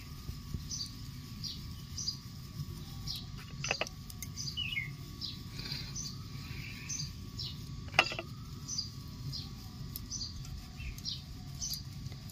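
A bird chirping over and over, short high chirps about twice a second, over a steady low rumble. Two sharp knocks about four and eight seconds in, the second the loudest sound.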